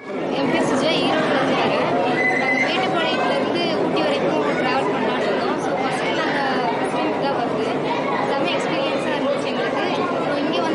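Crowd chatter: many people talking at once in a dense, steady babble with no single voice standing out, starting suddenly.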